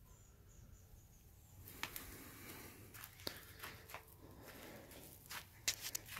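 Faint rustling with a few light clicks and taps, starting about a second and a half in.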